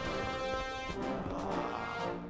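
Background music from the cartoon's score, sustained chords with brass held steadily.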